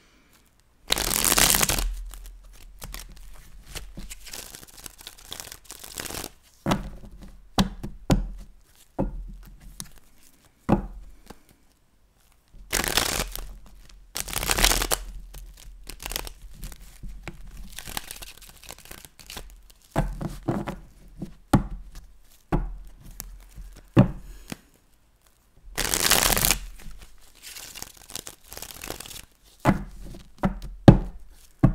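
A tarot deck being shuffled by hand: four longer bursts of rustling card shuffles, about a second each, among many short clicks and taps as the cards are handled and squared.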